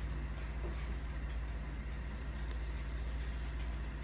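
Steady low hum with no distinct events; the thin stream of sauce from the squeeze bottle makes no sound that stands out.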